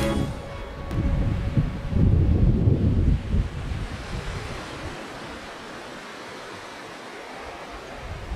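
Surf washing over the sand at the water's edge, with wind rumbling on the microphone. The wind is heaviest in the first few seconds, then it settles to a steady, quieter wash.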